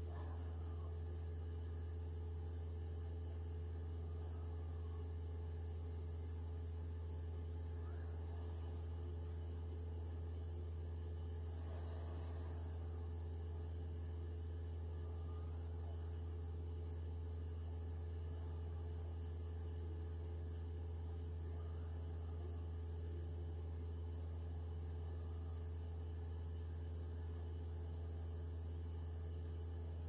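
Elegoo Mars resin 3D printer's Z-axis stepper motor driving the build plate down at the start of a print: a steady low hum with a few fainter higher tones. This is the grinding the printer goes into whenever a print starts, the cause of which the owner cannot find.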